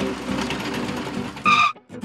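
Engine sound effect of a cartoon excavator running, with background music over it, and a short high beep about one and a half seconds in.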